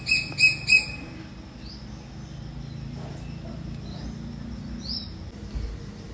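A bird chirping: a quick run of about six short, high notes in the first second, then a few fainter calls. A low steady hum runs underneath.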